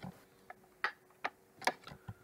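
A series of faint, short clicks, about two or three a second, over a low steady hum.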